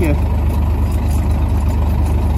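Truck's diesel engine idling steadily, a deep low rumble with an even pulse.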